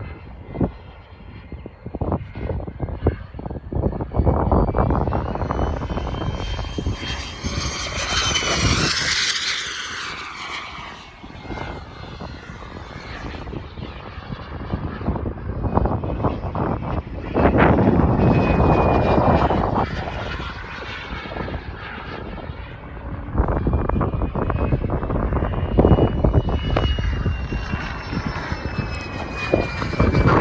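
Kingtech K-102G4 jet turbine of an RC model jet whining in flight as it passes overhead. Its high whine slides in pitch as it comes and goes, and it is loudest about 8 to 10 seconds in and again around 18 seconds. Wind rumbles on the microphone underneath.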